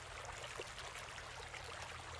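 Small waterfall trickling and splashing steadily down a stone wall.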